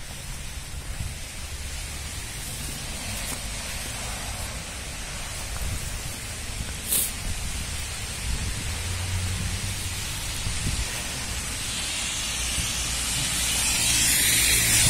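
Wind buffeting a handheld phone's microphone outdoors, a low rumbling noise with no voices. A single sharp click comes about seven seconds in, and near the end a rustling hiss builds as the phone is brought against a padded winter jacket.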